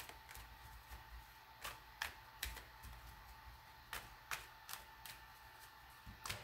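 Faint, irregular clicks and taps from a tarot deck being handled, with cards and fingernails knocking lightly against each other, about a dozen times.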